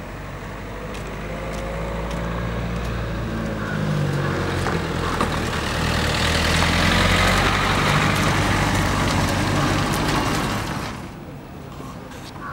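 A small hatchback car driving past close by: engine and tyre noise building up, loudest about halfway through, then dying away shortly before the end.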